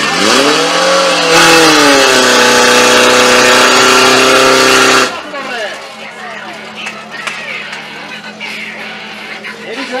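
A racing fire pump's engine revving up hard, its pitch climbing and then holding at a loud, steady high speed as the pump takes water. The sound drops away sharply about five seconds in, leaving a fainter engine drone under shouting voices.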